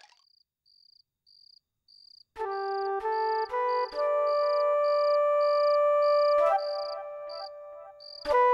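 Cricket chirping, a steady high chirp about twice a second, as for a night scene. About two and a half seconds in, background music with long held chords comes in under it.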